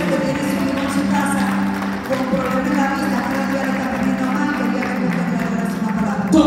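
Live worship music from a church band played over a PA in a large hall: slow, sustained keyboard chords that change every few seconds.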